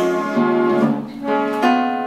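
Double-necked Viennese contra guitar (Schrammel guitar) plucking chords and a button accordion holding sustained notes, playing an instrumental passage of a Wienerlied.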